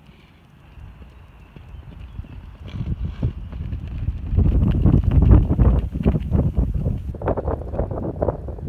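Two horses galloping on turf, their hoofbeats a rapid run of thuds that builds from about three seconds in, is loudest in the middle as they pass close, then fades as they run off.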